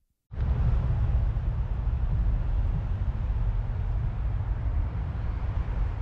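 Wind buffeting an outdoor microphone: a loud, rough low rumble with a hiss above it that starts abruptly just after the start.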